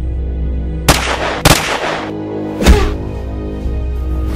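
Three sharp, dubbed-in impact sound effects, each with a ringing tail: one about a second in, one half a second later and one near three seconds, over a steady low droning film score.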